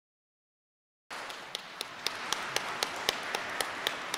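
Audience applause that starts about a second in, with sharp claps at a steady pace of about four a second.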